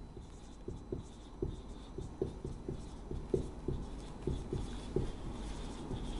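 Marker pen writing on a whiteboard: a run of short strokes, about three a second, as letters are written out.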